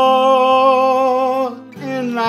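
A man singing a country song to his own acoustic guitar: one long held note that ends about a second and a half in, then the next sung phrase begins near the end.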